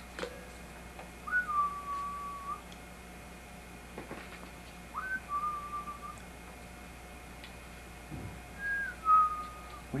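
Three short whistles a few seconds apart, each a quick upward slide into a held steady note. A soft low thump comes just before the last one.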